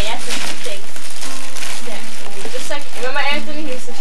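Indistinct voices talking to a baby, with a rising sing-song stretch about three seconds in, over the steady hiss of old camcorder tape.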